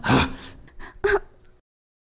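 A man's pained gasp as he lies hurt after a beating, followed by a short groan about a second in. The sound then cuts off to dead silence.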